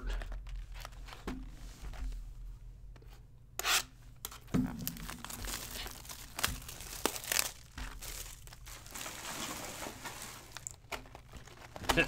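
Trading card packs being handled and their wrappers torn open and crinkled by hand, an irregular rustling with a few sharp knocks of cards and boxes.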